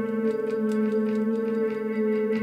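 Electric bass guitar bowed like a cello, holding steady droning notes with a ringing overtone, over a light tick about four times a second in the band's music.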